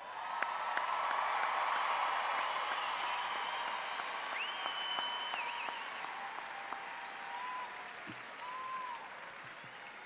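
Crowd applauding in a large arena, swelling quickly in the first second and then slowly dying away.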